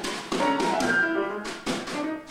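Live acoustic grand piano and drum kit playing jazz together: ringing piano notes and chords over sharp drum and cymbal strikes.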